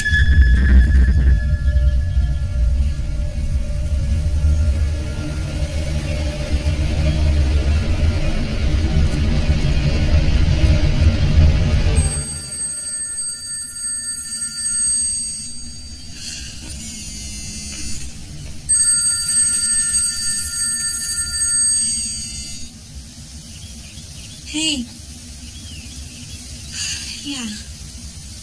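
Dark film-score drone with a heavy low rumble that cuts off abruptly about halfway through. A phone then rings twice, each ring a steady high electronic tone lasting about three seconds.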